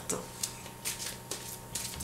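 A deck of oracle cards being shuffled by hand: a string of short papery flicks, several in two seconds.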